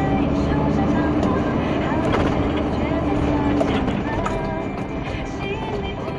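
Radio broadcast playing, a voice with music, over the low steady rumble of a vehicle driving.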